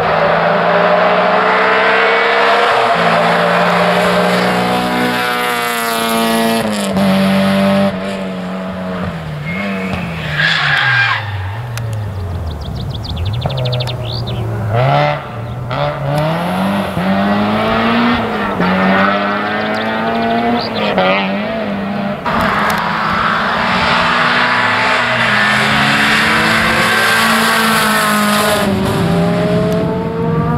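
Rally car engine on a special stage, revving high and shifting up through the gears, then revs falling as it brakes and changes down for a corner, with a brief tyre squeal around ten seconds in, before it accelerates hard up through the gears again.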